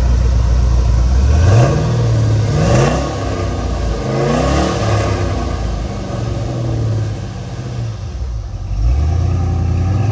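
1969 Chevrolet C10 pickup's engine revving as the truck pulls away and accelerates, its pitch climbing several times in the first five seconds. It eases off about eight seconds in and picks up again near the end.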